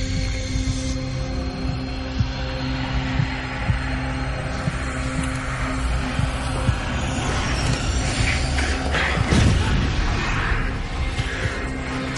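Dramatic television score of held low drones and sustained tones, with a rushing, noisy swell building about eight seconds in and easing off near the end.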